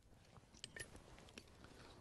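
Near silence, broken by a few faint clicks of a deer-antler soft hammer touching the edge of a stone handaxe.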